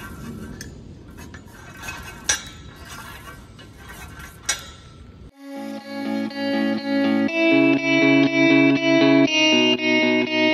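A few sharp metal clinks from a homemade steel sand bucket (a well bailer), its rod and valve being worked inside the rusty tube. About five seconds in, louder background music of plucked, guitar-like notes cuts in and takes over.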